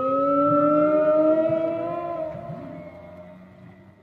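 Several long tones sounding together and sliding slowly upward in pitch. They swell about a second in, then fade away over the last two seconds.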